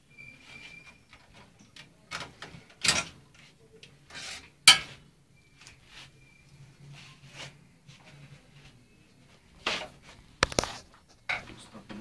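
Irregular knocks and clicks of objects being handled, the loudest about halfway through and a quick cluster near the end, with faint short high beeps near the start and again in the middle.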